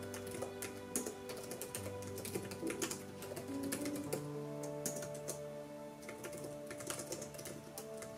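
Typing on a laptop keyboard: quick runs of soft keystroke clicks with short pauses between them, over soft background piano music with sustained notes.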